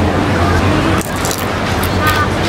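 A fried corn tortilla chip being bitten and chewed, giving a few crisp crunches about a second in and near the end, over a steady low hum of background noise.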